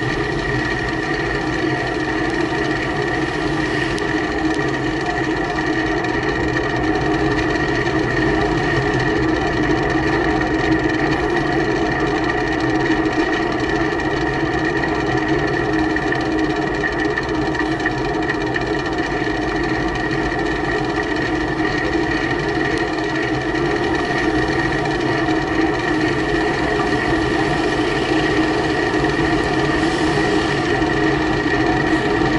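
Steady road and wind noise from a camera riding on a bicycle through light street traffic, with a constant hum at an unchanging pitch.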